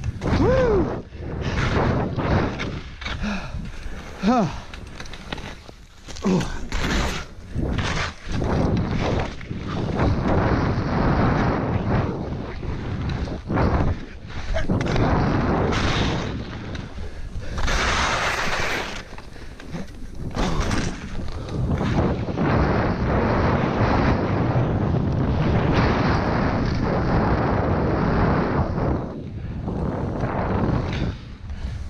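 Skis hissing and scraping through fresh powder snow in rushes that rise and fall with each turn, with wind on the camera microphone. A few short vocal grunts from the skier come in the first few seconds.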